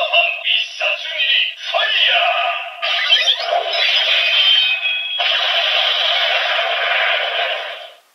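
Kamen Rider Saber DX toy belt and sword playing their electronic transformation music with synthetic sung vocals through small toy speakers, in several short phrases and then a long held passage that cuts off just before the end.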